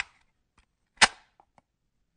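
A single sharp mechanical click about a second in, like a cassette player's key being pressed down, followed by a couple of faint ticks.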